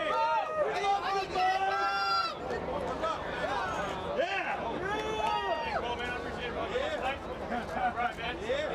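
A crowd of people talking and calling out over one another, several voices at once, over steady low street noise.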